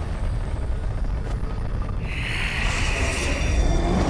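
Animation sound effects: a deep, steady rumble, joined about halfway through by a hissing surge of magical energy that swells toward the end.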